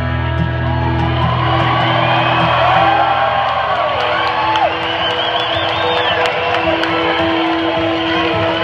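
A 12-string acoustic guitar played live, its notes ringing out in a long held passage, while the crowd whoops, whistles and cheers over it.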